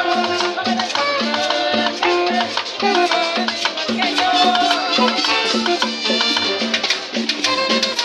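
Live Latin dance music from a small street band: button accordion and alto saxophone carrying the melody over a walking upright bass, with conga, snare drum and a hand-held metal scraper keeping a steady, even beat.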